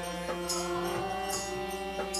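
Harmonium playing sustained, held chords in a devotional kirtan interlude, with a jingling percussion stroke falling about once a second and soft low drum strokes between them.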